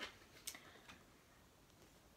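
Near silence, with three faint clicks in the first second from a paperback picture book's pages being handled and turned.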